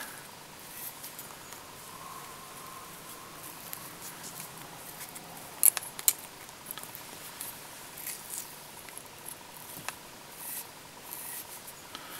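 Faint handling noises of metal hackle pliers and feather fibres as a French partridge hackle is wound onto a wet fly, with small irregular ticks and rustles. Two sharp clicks come close together a little over halfway through.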